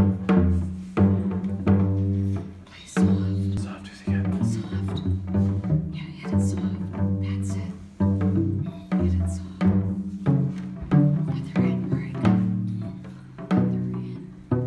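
Live music: a plucked string instrument playing low notes, struck roughly once a second and left to ring, with light taps on small lollipop-style hand drums.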